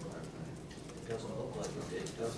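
Low, indistinct conversation, too soft to make out words, over a steady low room hum.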